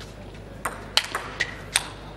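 Table tennis rally: the ball cracking off the players' bats and bouncing on the table, about five sharp clicks in quick succession starting about half a second in.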